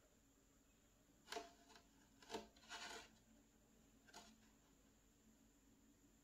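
Near silence broken by a handful of faint, brief rubbing sounds in the first few seconds: fingertips rubbing together to sprinkle tiny kale seeds onto potting soil.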